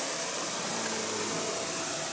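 Steady background hiss of room noise with a faint low hum, even throughout.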